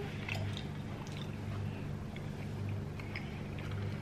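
Close-miked chewing and eating: soft, scattered small clicks and wet mouth sounds, over a steady low hum.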